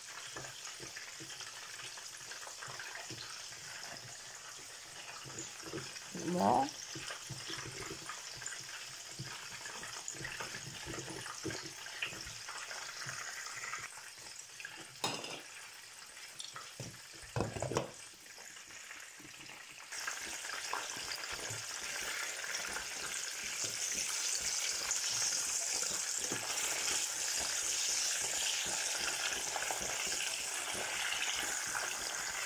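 Fish frying in hot oil in a pan, a steady sizzle that gets louder about two-thirds of the way through. A few brief utensil knocks or scrapes come in along the way.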